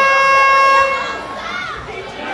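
An air-horn-like buzzer plays over the arena's sound system as the rumble's entry countdown runs out, signalling the next entrant. It is one steady tone that cuts off about a second in, leaving crowd noise in the hall.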